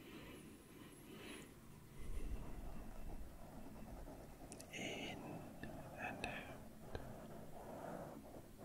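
A soft-bristled brush stroked against a foam microphone windscreen, giving a gentle brushing noise with a low rumble that grows louder about two seconds in.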